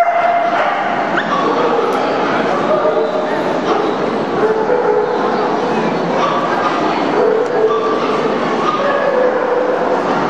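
Dogs barking and yipping over a steady background of crowd chatter.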